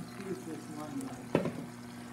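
Egg and vegetable mixture sizzling as it is poured into hot coconut oil in a cast-iron skillet, with one sharp knock a little past halfway.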